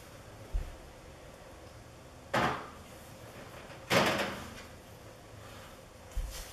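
Two loud metallic clatters, a second and a half apart, from a metal baking pan going onto an oven rack in an open oven; the second one rings on briefly.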